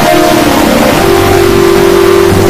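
Heavily distorted, effects-processed logo sound: a loud, noisy sound with held tones, the main tone stepping up in pitch about a second in.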